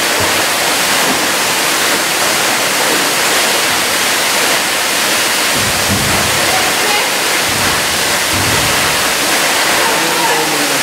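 Waterfall's falling water: a steady, even rush of noise that does not change.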